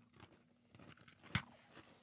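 Faint biting and chewing of a mango cream-filled sandwich biscuit, with one short sharp crunch a little over a second in.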